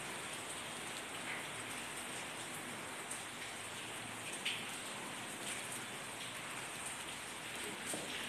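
Marker pen writing on a whiteboard: a few faint brief scratching strokes over a steady low background hiss.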